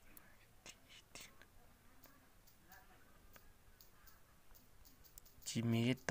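A quiet stretch with a few faint clicks and soft, whispery voice sounds; a voice starts speaking loudly near the end.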